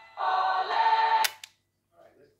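Music playing back from a cassette through a Sony TCM-6DX cassette-corder's small mono speaker, cut off about a second in by one sharp click of a transport key.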